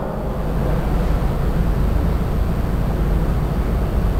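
Steady low rumbling background noise with no distinct events, heaviest in the bass.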